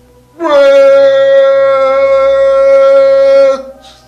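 One long, steady horn blast, sliding up slightly into a held note and cutting off sharply: a dramatic sound effect.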